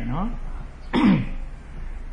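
A man clears his throat once, about a second in: a short, harsh sound that falls in pitch.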